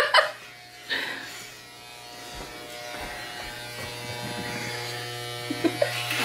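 Electric hair clippers running with a steady buzzing hum while shaving a man's head down close. The buzz grows louder after about two seconds.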